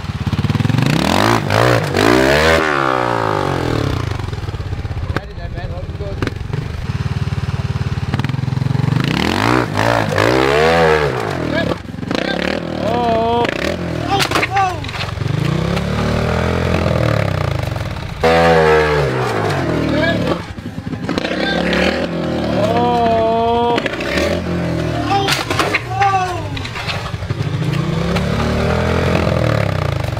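Trials motorcycle engine revved in short blips, rising and falling every couple of seconds, with a few hard revving bursts, as the bike is ridden at a tall rock step.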